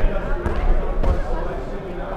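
A dodgeball thudding and bouncing on a hardwood sports-hall floor, about three thuds roughly half a second apart, echoing in the large hall.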